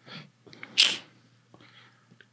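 A man's short, sharp puff of breath, a hissy burst about a second in, after a fainter breath at the start.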